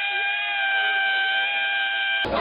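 Sea lion holding one long, steady, high-pitched call with its head raised, without a break.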